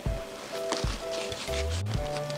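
Background music with a steady beat: a low thump a little under once a second and short repeated chords between the beats.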